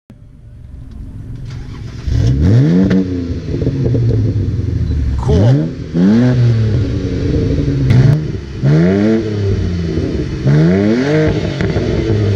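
BMW 328i's inline-six running through a straight-pipe exhaust, revved four times from idle: each rev a quick rising then falling engine note, settling back to a steady idle between.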